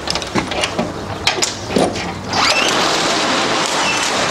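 A few clicks and knocks of a bag being handled, then a zip pulled open in one long steady run over the last second and a half or so.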